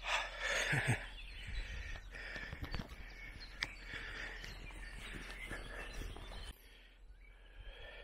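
Outdoor rural ambience: a steady wash of wind with faint, distant bird calls.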